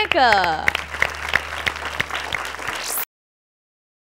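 Audience applause that follows a brief spoken phrase and cuts off suddenly about three seconds in.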